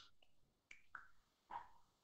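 Near silence in a pause between spoken sentences, broken by a few faint short clicks.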